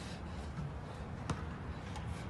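Faint low background rumble, with one short sharp click a little past halfway.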